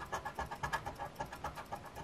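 A copper coin scratching the coating off a scratch-off lottery ticket, in quick, soft back-and-forth strokes at about seven a second.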